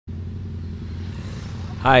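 Motorcycle engine idling with a steady low hum.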